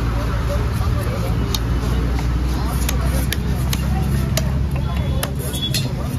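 Heavy cleaver chopping wahoo into chunks on a wooden chopping log: sharp knocks at uneven intervals, roughly one a second. Under them run a steady low rumble and voices.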